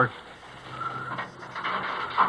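Radio-drama sound effect of a gasoline pump being started: mechanical clicks and a rattling whir that builds after about a second.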